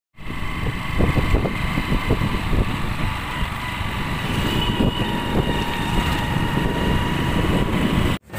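A motorbike running steadily at road speed, heard from the rider's seat, mixed with rumbling wind noise on the microphone.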